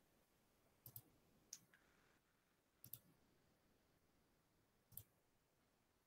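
Faint clicks of a computer mouse: a quick double click about a second in, then a few single clicks, over near silence.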